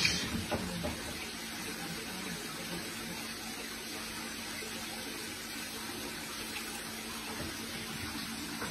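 Water running steadily in a large aquarium, an even hiss with a faint steady hum underneath.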